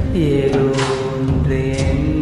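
Tamil film song playing: a long held melody line that slides down in pitch just after the start and then holds, over steady percussion strikes.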